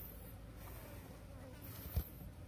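High-pitched insect buzzing that swells and fades, strongest again near the end, with a single low thump just before the end.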